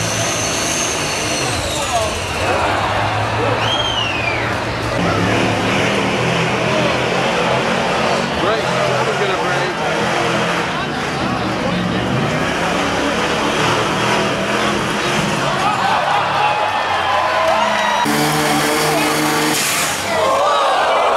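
Diesel pickup truck engines running hard under load as they drag a truck-pull weight sled, with crowd noise and voices mixed in.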